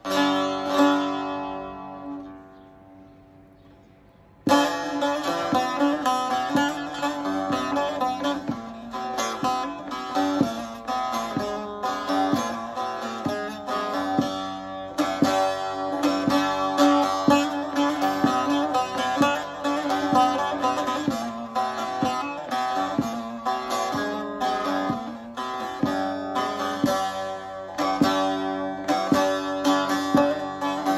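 Bağlama (Turkish long-necked lute) played solo as the instrumental opening of a Turkish folk song: a single strummed chord rings and fades over about four seconds, then a steady run of quickly plucked melody starts and carries on.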